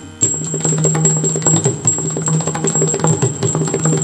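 Yakshagana instrumental accompaniment between sung verses: rapid drum strokes over a steady held drone, with a thin high ringing on top. The playing drops out for a moment at the start, then resumes.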